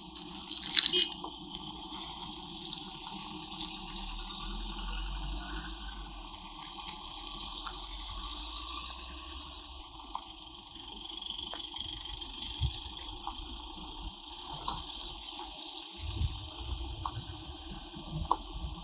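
Cars moving slowly at low speed, a low engine rumble that swells twice over a steady outdoor background hiss.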